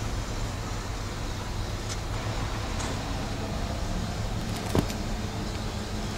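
Steady low rumbling background noise, with a few faint ticks and one sharp click about three-quarters of the way through.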